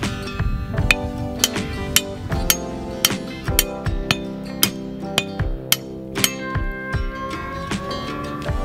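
Acoustic guitar music, with a sledgehammer striking steel rebar about twice a second to drive it into the ground.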